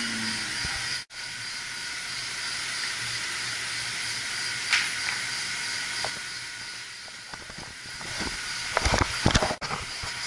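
Steady hiss and low hum of mechanical-room equipment around running circulator pumps. The sound drops out for an instant about a second in, and a few knocks come near the end.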